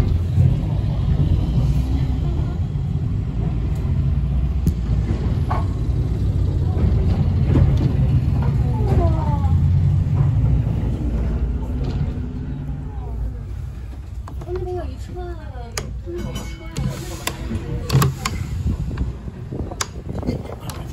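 Low, steady rumble of a W class electric tram running along its track, heard from inside the open-windowed car, easing off about two-thirds of the way through. Scattered voices can be heard, along with a few clicks near the end.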